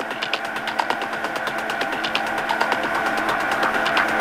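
Techno track in a breakdown without its bass drum: a fast, even run of short percussive hits over a held synth tone, slowly getting louder as it builds.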